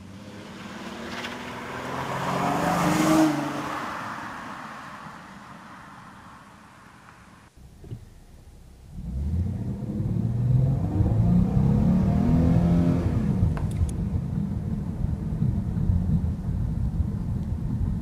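A car drives by, louder as it approaches and fading away after about three seconds. Then, from inside the cabin, a Ford Mustang's engine accelerates from a standstill, loud and rising in pitch for several seconds before levelling off.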